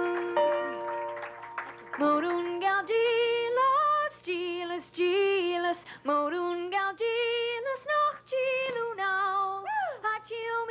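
Scattered clapping in the first two seconds, then a group of women's voices singing a song together in harmony, in short phrases.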